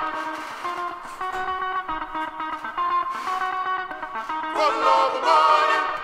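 Guitar sample from a funk record playing back as a loop, with chanting voices on the sample coming in near the end. The low end is cut, so it sounds thin, with no bass.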